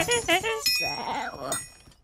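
Animated animal characters' wordless vocal calls: a few short high calls, then a longer call from about half a second in that fades away near the end, with thin steady high tones over it.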